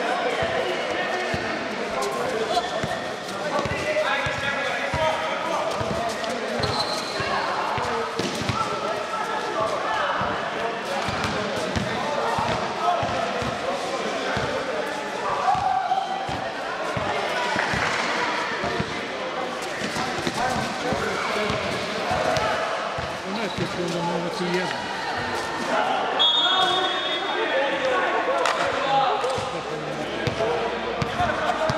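A basketball bouncing on a hard indoor court during a pickup streetball game: many sharp thuds at an uneven pace, over a steady hum of players' voices.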